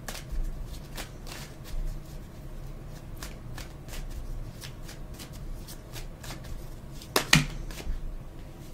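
Tarot cards being shuffled and handled: a run of quick card clicks and flicks, with a sharper, louder snap near the end.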